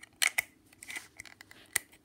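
Small plastic toy pieces being handled, giving a quick series of light clicks and taps, several close together about a quarter second in and single ones later.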